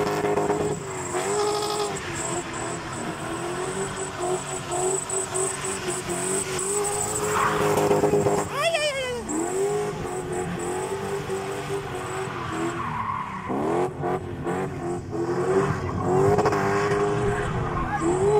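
V8-engined car held at high revs while spinning on a dirt road, the revs dropping and climbing back several times.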